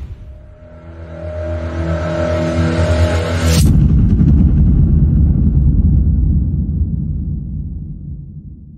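Cinematic intro sound design: a droning tone swells for about three seconds, then a sharp hit about three and a half seconds in, then a deep rumble that slowly fades away.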